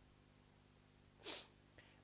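Near silence, broken about a second and a quarter in by one short, breathy intake of air through the mouth or nose.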